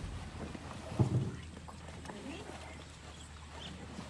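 Quiet, low human voices over a steady low hum, with a brief loud thump about a second in.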